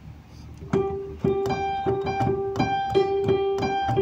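Piano-like keyboard music starts about a second in: a quick melodic figure built around one note that keeps repeating.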